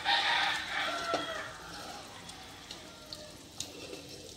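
A rooster crowing once, a single long call of about two seconds that is loudest at its start and trails off. A few light clicks of tongs against the pot follow.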